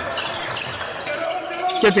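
A basketball being dribbled on a hardwood gym court, a few sharp bounces over the steady background noise of the hall. A man's commentary comes in near the end.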